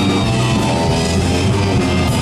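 Garage-punk band playing live, electric guitar and drum kit at the front of a loud, steady rock mix, recorded from within the audience.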